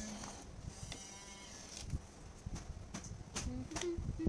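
A short, faint animal bleat about a second in, with a few light knocks and clicks from small items being handled on a tabletop.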